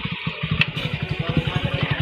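A motorcycle engine idling: a rapid, even pulsing. A single sharp click about half a second in.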